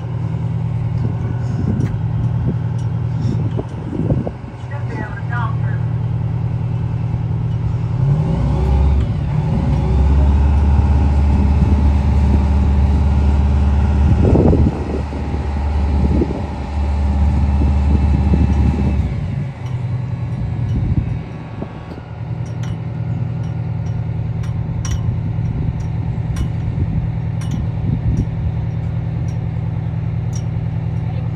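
Fire truck engine running steadily, speeding up from about eight seconds in to about nineteen seconds as the aerial ladder is raised, with a higher steady tone along with it during that stretch before it settles back.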